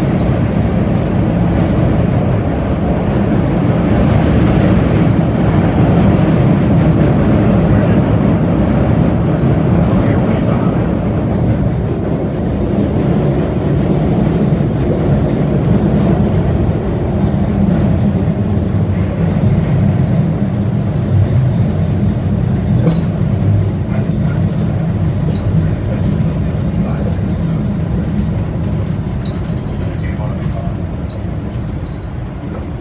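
Older MBTA Red Line subway car running through a tunnel: a loud, steady rumble of wheels on rails and car noise. It eases off a little near the end as the train slows into a station.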